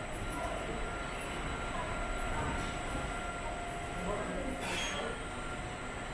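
Busy airport check-in hall ambience: a steady low mechanical drone with faint steady tones, under distant indistinct voices, with a brief rushing noise about five seconds in.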